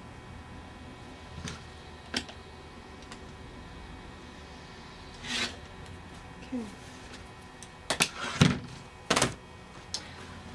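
Rotary cutter and acrylic quilting ruler handled on a cutting mat while trimming fabric border strips to length: a few light clicks, a short swish of the blade slicing the layered fabric about halfway through, then a cluster of louder clacks near the end as the cutter and ruler are set down and moved.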